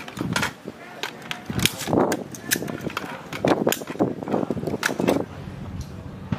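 Sharp metallic clicks and clacks of service rifles being handled, unloaded, during weapons-handling drill, scattered through and often coming in quick pairs.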